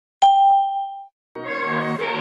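A single bright bell-like ding, struck about a quarter second in and ringing out for under a second. After a brief silence, pop music begins with sustained chords.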